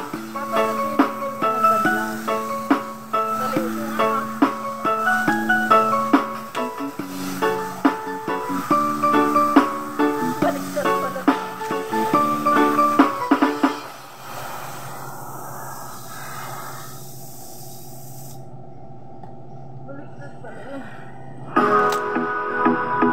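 Background music: a plucked-string melody of short notes. About two-thirds of the way through it gives way to a quieter, muffled, steady hiss, and the music comes back in just at the end.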